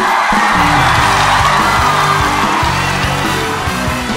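A live stage band plays upbeat music while a studio audience cheers; the cheering is loudest in the first two seconds, then fades, leaving the music.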